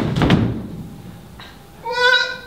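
A loud rush of noise that dies away in the first half second, then, near the end, a high held vocal sound, a wail or cat-like meow made by a person's voice.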